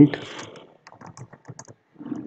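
Computer keyboard keys typed in a quick run of light clicks, entering a short word.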